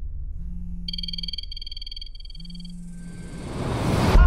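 Mobile phone ringing with a trilling electronic ringtone in short repeated bursts, over a low rumble. A rising whoosh swells near the end.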